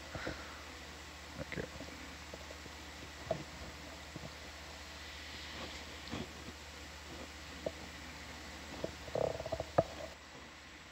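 Steady low electrical hum on the control-room audio feed, with scattered faint clicks and knocks. A quick cluster of knocks comes near the end.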